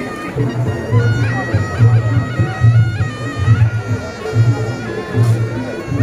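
Reog Ponorogo gamelan played live: a slompret, a reedy double-reed shawm, holds long melody notes that step to new pitches every second or so, over a low drum beat about twice a second.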